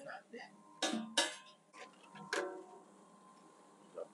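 Steel beam being handled and knocked: three sharp metallic clanks, two close together about a second in and a third just after two seconds, each with a brief ring.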